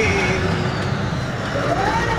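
A man's singing voice holding long notes of a devotional street song: one note trails off early, and a new one rises and wavers near the end. Steady traffic and street noise runs underneath.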